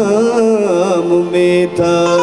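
A man singing a Balochi song in a wavering, ornamented melody over a harmonium. The voice drops away about halfway through, leaving the harmonium's chord held steady.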